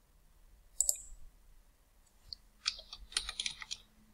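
A single computer mouse click about a second in, then a quick run of keyboard keystrokes in the second half as a short word is typed.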